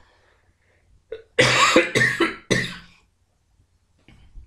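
A man coughing: a short catch about a second in, then a few hard coughs in quick succession.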